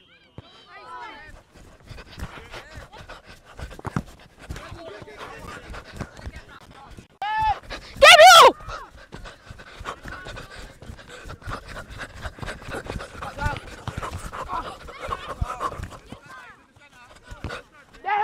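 Outdoor football match sound: players and coaches shouting across a grass pitch, with scattered thuds of the ball being kicked. One loud, close shout comes about eight seconds in, just after a shorter call.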